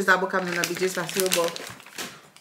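A woman speaking briefly, with the plastic packaging of a mesh produce bag of avocados crinkling as it is handled; the crackle comes through most plainly near the end, after she stops talking.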